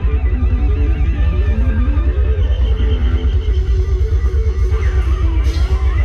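Live band playing upbeat Thai ramwong dance music, loud, with a melody line stepping up and down over a heavy, steady bass beat.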